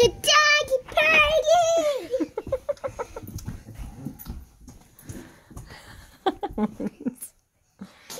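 A young child's high-pitched, wavering squeals and giggles in the first two seconds, followed by scattered light knocks and shuffling, with a few short vocal bits near the end.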